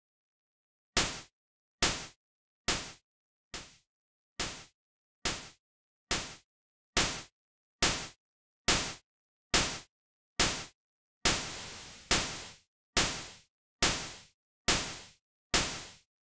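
Synthesized psytrance snare from Serum's noise oscillator, run through Diode 1 distortion and looping on beats two and four, about one hit every 0.85 seconds. Each hit is a sharp noise crack with a quick decay, and the distortion drive is being turned up as it plays. One hit about eleven seconds in rings on longer than the rest.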